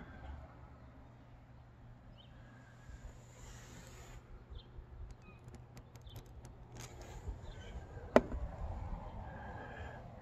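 Quiet outdoor background: a low rumble of wind on the microphone, a couple of faint short chirps, and scattered soft clicks that grow more frequent in the second half, with one sharper click about eight seconds in.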